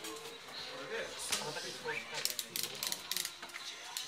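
Sleeved Magic: The Gathering cards being shuffled by hand, with a quick run of crisp plastic clicks in the second half.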